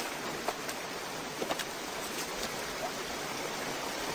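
Rushing whitewater river: a steady rush of water, with a few faint clicks now and then.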